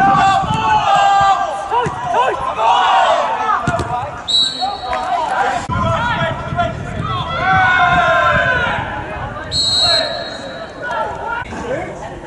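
Players' shouts and calls on a football pitch, with two long blasts of a referee's whistle, one about four seconds in and a shorter one near ten seconds, and a couple of dull thuds.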